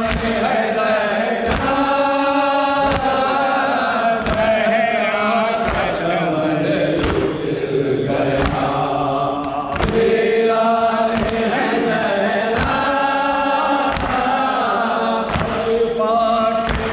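A group of men chanting a noha, a Shia lament, with a leading voice over a microphone. Chest-beating (matam) by the whole group lands in unison about once every second and a half, keeping time with the chant.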